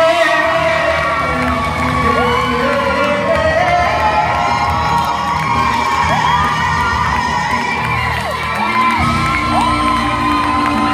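Live gospel band with bass guitar and keyboard playing on, while the audience cheers and whoops over it in many short rising-and-falling calls.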